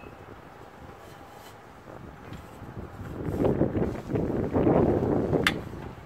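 Scraping and rubbing of the Honda Civic's shifter linkage being forced by hand over a new, tight polyurethane bushing without lubricant. The sound is irregular, building up over the second half, with a sharp click near the end.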